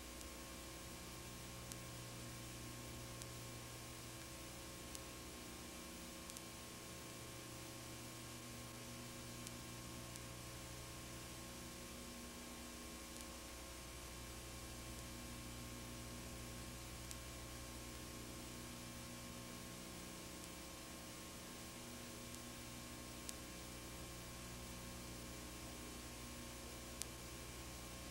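Faint steady electrical hum with hiss, broken by a few faint ticks.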